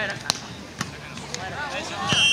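Volleyballs being struck by players' hands and forearms on sand courts: about four sharp slaps, roughly half a second apart, with players' voices calling near the end.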